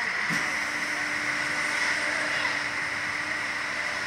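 A steady machine hum and hiss from the launch ride, with a click about a third of a second in after which a low steady hum sets in and holds.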